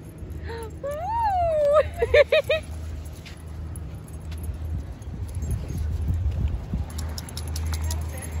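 A woman's voice whooping once, the pitch rising and falling, then a short laugh of four quick notes, over a low steady rumble.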